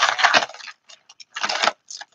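Costume jewellery and loose beads clinking and rattling as they are sorted through by hand: a clatter in the first half second, a few light ticks, then another clatter about one and a half seconds in.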